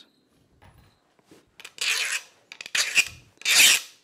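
A hand file scraping across a piece of quenched rebar in three strokes, about a second apart, the last the loudest. The file is still skating on the steel but feels a little more grabby maybe, a sign that the quench has hardened it.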